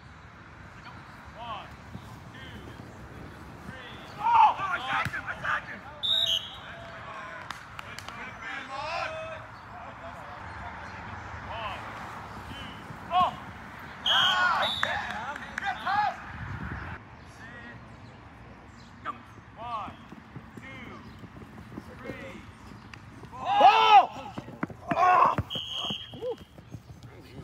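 Players shouting and calling out to each other across an open field during a flag football game, loudest about four, fourteen and twenty-four seconds in, over a steady outdoor background.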